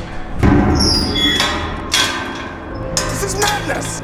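Sheet-metal bungee basket hanging from a crane clanking: a heavy thump about half a second in, high metallic ringing just after, then further knocks. Music plays underneath.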